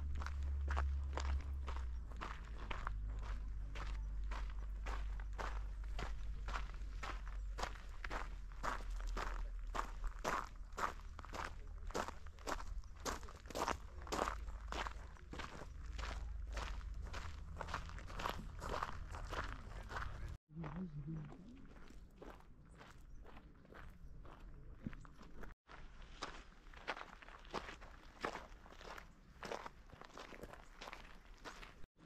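Footsteps on a gravel path, about two steps a second, with a low rumble underneath. About two-thirds in the sound breaks off briefly; after that the steps are fainter and the rumble is gone.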